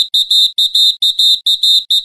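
Rapid high-pitched electronic beeping, a single tone pulsing on and off about four to five times a second.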